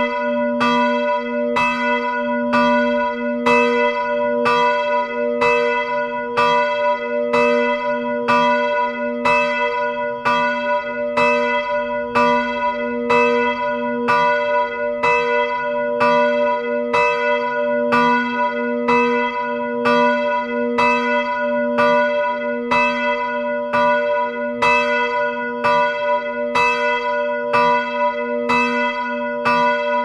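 Single swinging bronze church bell, cast in 1947 by Jacobus van Bergen of Midwolda with the note b1, being rung close up in its belfry. The clapper strikes evenly, a little more than once a second, each stroke ringing on into the next.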